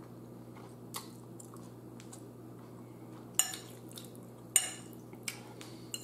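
Close-up eating sounds of a person eating spaghetti with meat sauce: quiet chewing broken by a few short, sharp mouth and fork noises, the two loudest about three and a half and four and a half seconds in.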